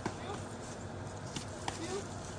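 A person and a dog walking on leaf-strewn grass: a few sharp clicks and light steps. Near the end comes a short rising 'pew', a voiced cue from the handler.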